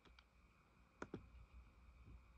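Two quick clicks close together about halfway through, from the HP laptop being clicked while its on-screen book is navigated; otherwise near silence.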